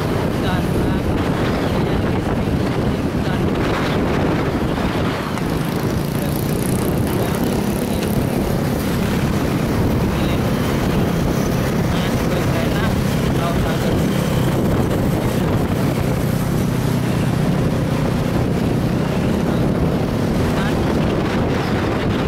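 Steady wind rush on the microphone while riding along a city road, with road and engine noise from the surrounding motorcycles and cars underneath.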